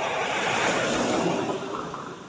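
A vehicle passing by, its rushing noise swelling to a peak about a second in and fading away.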